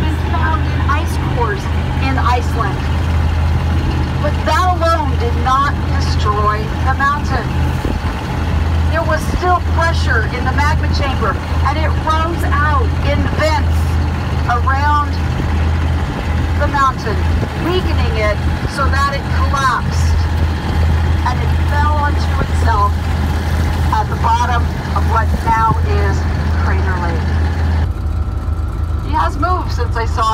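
Tour boat's engine running with a steady low hum, under a person talking throughout. Near the end the hum changes abruptly and the higher sounds drop away.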